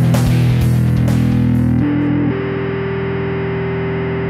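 Ibanez SR500E four-string electric bass played through a distorted drive tone in a heavy metal style. About two seconds in, the dense, bright playing stops and a single distorted note is held, ringing on steadily.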